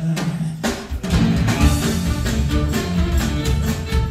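Live band playing an instrumental passage, led by drum kit and upright bass: a couple of sharp accents at the start, then the full band comes in about a second in.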